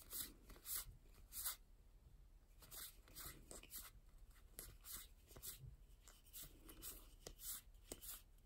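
Faint papery swishes of Weiss Schwarz trading cards being slid one at a time across the front of a hand-held deck, a short swish every half second to a second.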